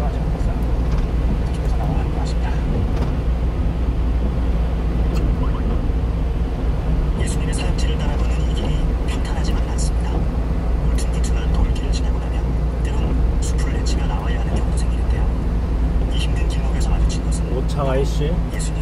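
Inside a small truck's cab on the move: a steady low drone of engine and tyres on a wet highway. From about halfway through, scattered short sharp ticks sound over it.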